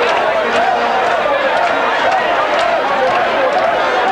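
A packed crowd of many voices talking and calling at once, a loud steady din, with a few short sharp clicks on top.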